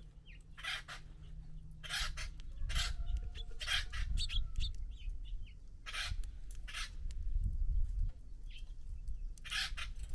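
Small finches feeding in a seed tray right beside the microphone: a scatter of sharp taps and cracks as they peck and shell seed, over a low rumble of the feeder being jostled. A few faint short chirps come through as well.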